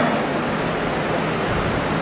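Steady, even hiss of background noise, with no clear event or tone in it.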